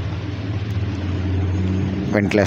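A steady low hum with background noise and no distinct events.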